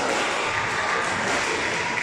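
Steady background din of a large indoor squash hall, with no distinct racket or ball strikes.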